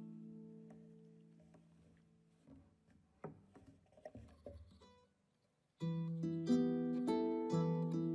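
A plucked chord rings out and fades over the first two seconds or so, followed by a few faint knocks and a brief silence. About six seconds in, a kora, the West African harp-lute, starts plucking a repeating melodic pattern of single notes.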